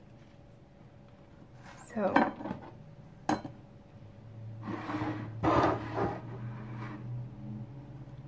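Handling noises on a kitchen counter as food is laid into a metal loaf pan: a clattering rustle about two seconds in, a sharp click a second later, and more clatter and rustling around five to six seconds. A faint low hum runs under the second half.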